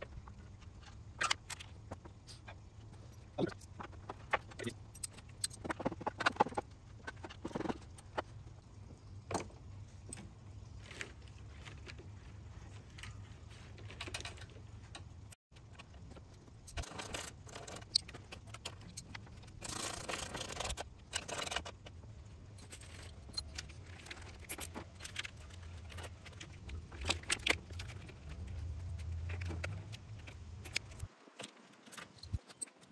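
A wrench and metal fittings clinking and knocking as a replacement AC condenser is fastened into a truck's front end: scattered sharp clicks, with a rasping sound for a second or two about two-thirds of the way in. A steady low hum runs underneath.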